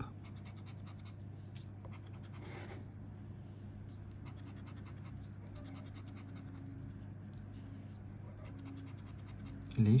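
Scratch-off lottery ticket being scratched with a scraper: a run of light, quick scrapes across the card's coating over a steady low hum.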